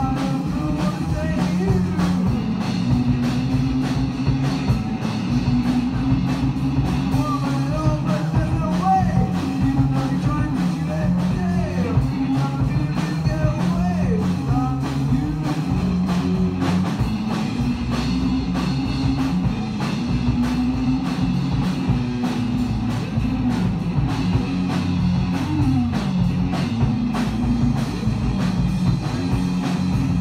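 A rock band playing live on electric guitar, electric bass and drum kit, a steady full-band passage.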